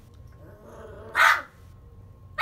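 A boxer puppy gives a single short, high-pitched bark about a second in, complaining at the bigger dog it is play-fighting with.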